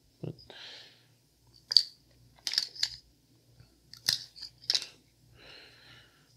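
Folding knives being handled and lifted off a wooden table: about five short, sharp clicks and knocks spread over a few seconds, with soft rustling between them.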